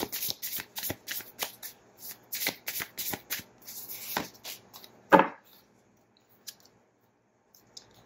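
Tarot cards of the Elemental Power Tarot deck being hand-shuffled, a quick run of card snaps and flicks for about four seconds. Then one loud thump about five seconds in, after which it goes nearly still.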